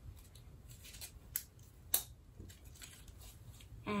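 Faint handling noise with a few light clicks as a snow-globe top is taken off a tumbler; the sharpest click comes about two seconds in.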